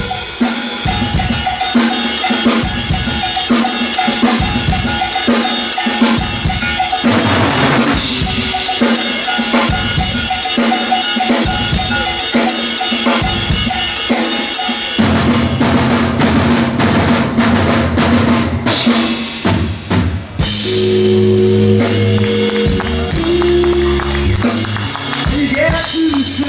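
Live drum kit solo with hand percussion, dense snare, bass drum and cymbal strokes with cowbell-like metal hits. About fifteen seconds in, steady bass and keyboard notes come in under the drums as the band rejoins.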